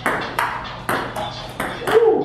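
Table tennis rally: the ball pings off the paddles and the table, about six sharp hits in two seconds.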